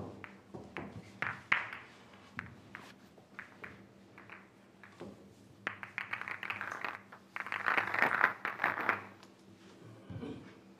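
Pool balls clicking against one another as they are gathered and packed into the rack for the next frame. Scattered single clicks at first, then a dense run of rapid clicks from about six to nine seconds in.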